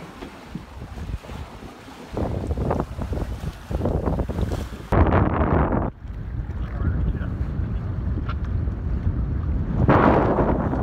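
Wind buffeting the microphone over the wash of water along the hull of a Sea Pearl 21 sailboat under way in choppy seas. It gets louder in uneven gusts from about two seconds in, with the strongest gusts about five seconds in and again near the end.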